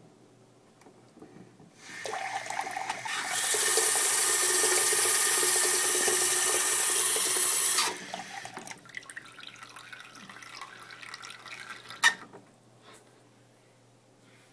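Bathroom sink tap running into water pooled in the basin: it comes on about two seconds in, runs steadily and loudly for about five seconds, then is shut off. Trickling and drips follow, and a single sharp click comes near the end.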